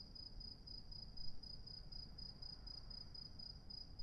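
Faint cricket chirping: a high, thin tone pulsing evenly several times a second, over a low background rumble.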